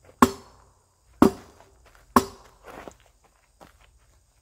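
Steel arming sword striking a pell of stacked rubber tires, three hard blows about a second apart, each a sharp hit that dies away quickly, with a few faint knocks after.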